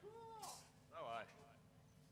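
A faint, wordless human voice: a drawn-out sound that rises and falls in pitch, a brief hiss, then a quick glide down in pitch.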